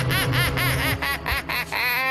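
A high-pitched cackling laugh: a quick run of "ha" syllables about five a second, ending in one drawn-out, rising note.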